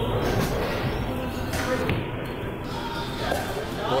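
Bowling alley din: a steady low rumble of bowling balls rolling down the wooden lanes, with a sharp clatter about a second and a half in and voices chattering in the background.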